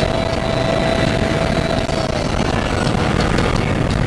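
Porsche Cayman at speed heard from inside the cabin: a steady mix of engine, wind and tyre noise, with a held whine that fades out a little after halfway.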